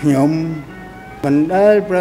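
An elderly man speaking Khmer in two slow phrases with long, drawn-out vowels and a short pause between them.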